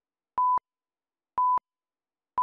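Countdown beeps: a short, steady electronic tone sounding once a second, twice here, with silence between, as in a film-leader countdown.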